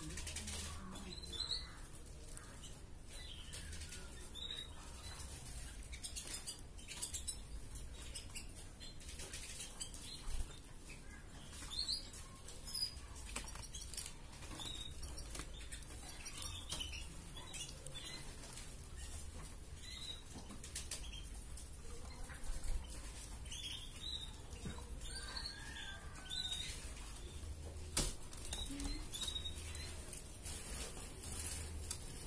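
Caged red-factor canary giving short, scattered high chirps and calls rather than a continuous song, with sharp clicks and wing flutters as it moves about the cage.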